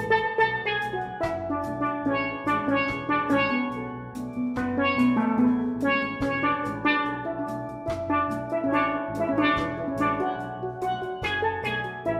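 Steel band playing a lively tune: many steelpans struck in quick, rhythmic runs of ringing notes over a drum beat.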